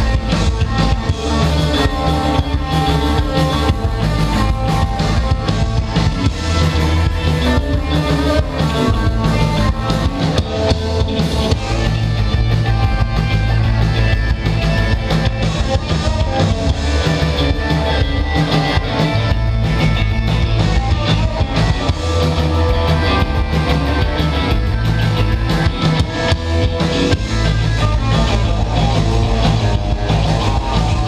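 Live instrumental surf rock band playing: two electric guitars over electric bass and a drum kit keeping a steady beat.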